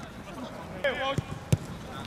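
A football being kicked: two sharp thumps about a second and a half in, the second one louder, just after a player's short shout.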